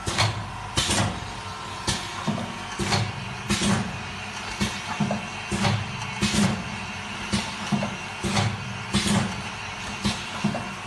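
Automatic liquid sachet filling and sealing machine running, its cycle marked by a sharp mechanical stroke about once a second over a steady low hum.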